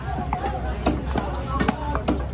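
Long fish-cutting knife chopping through mahi mahi flesh and bone into a wooden chopping block: a run of sharp chops, roughly one every half second.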